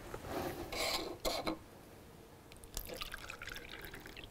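Water being poured from a glass carafe into small plastic beakers, a patchy trickling pour in the second half. Before it there are a few short knocks from the glassware being handled.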